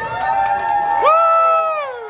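Fans cheering with long, drawn-out, high-pitched shouts: one voice holding a note, then a second cheer swooping up about a second in, held, and falling away near the end.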